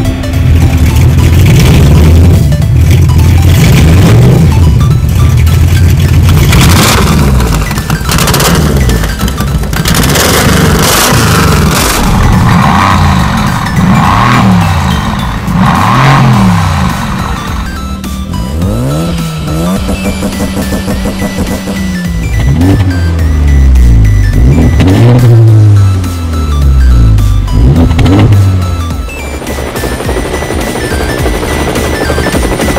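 Recorded sports-car engines revving again and again, pitch sweeping up and down, laid over the motionless toy cars as sound effects, with background music playing underneath.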